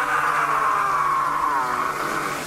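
A man's long, drawn-out scream, held on one pitch that sinks slowly toward the end.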